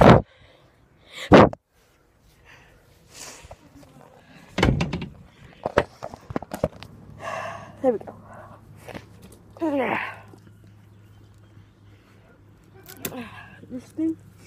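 Loud knocks and bumps of a phone being handled close to its microphone, twice in the first two seconds. Then a dull thud, scattered clicks, and short wordless vocal sounds.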